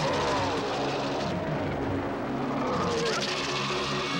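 Film sound effects of a giant ape fighting a giant snake. Growling, roaring calls swoop up and down in pitch, one at the start and another about three seconds in, over a constant heavy rumble.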